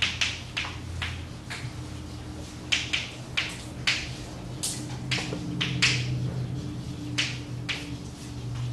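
Chalk writing on a blackboard: an irregular run of sharp taps and short scrapes, about two a second, as the chalk strikes and drags across the board, over a steady low hum in the room.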